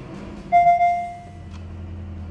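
A single ringing chime-like tone sounds about half a second in and fades over about a second. Then the low, steady hum of a Porsche engine idling comes in, heard from inside the cabin.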